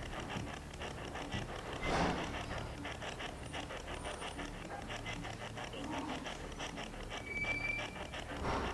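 Faint, fast, regular chopping noise, about five pulses a second, typical of a spirit box sweeping through radio stations during an Estes-method session. A short breath-like rush comes about two seconds in, and a brief thin tone sounds near the end.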